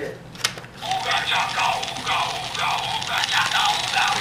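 Novelty birthday card's sound chip playing a speech-like recording through its small speaker, thin with no bass, starting about a second in after a sharp click.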